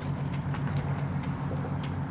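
Steady low drone of a distant motor, unchanged throughout.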